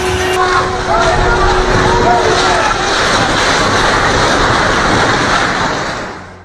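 Loud, steady rumbling roar of buildings collapsing and dust rushing during a major earthquake, with people's voices crying out over it in the first few seconds.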